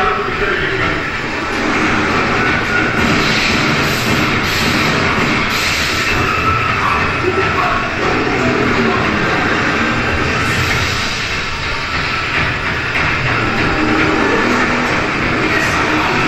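Soundtrack of a screened film excerpt, heard over the hall's speakers: a loud, continuous, dense din of noise with no speech.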